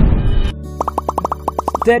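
Advert background music with a loud whoosh at the start, then a quick run of about a dozen short, evenly spaced cartoon pop sound effects. A voiceover begins with 'Study' at the very end.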